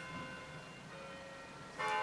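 Faint bell-like ringing tones: a few held notes that shift pitch, with a stronger cluster of them coming in near the end.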